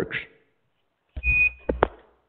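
A short, high electronic beep about a second in, followed by two quick clicks, heard over a phone line.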